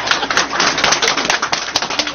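A small group clapping their hands: many quick, irregular sharp claps.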